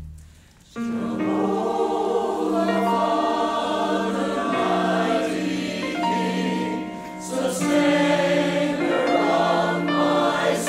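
Mixed-voice church choir singing a hymn, coming in about a second in after a brief pause.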